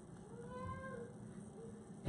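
A man's faint, high-pitched whimper: one short whine that rises and falls, lasting under a second, acting out a stifled attempt to cry out.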